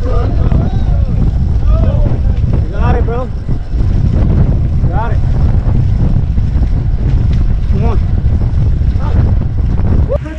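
Wind rushing over the microphone of a camera on a fixed-gear track bike ridden at speed, a loud, steady low rumble that does not let up.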